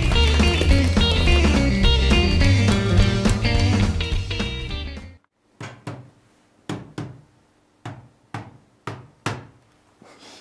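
Guitar-led rock music fades out about halfway through. It is followed by a series of sharp knocks, roughly two a second: a small hammer striking the casing of a closed laptop, 'percussive maintenance' on a computer that won't cooperate.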